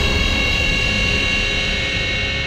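Dramatic background score: a held, droning synth chord that slowly fades.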